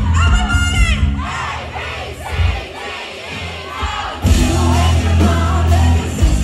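A live pop-rock band and singer playing to a crowd. About a second in, the band drops back and the audience sings and shouts along. The full band crashes back in loud about four seconds in.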